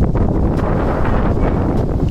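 Wind buffeting the camera's microphone: a loud, steady low rumble with no other distinct sound.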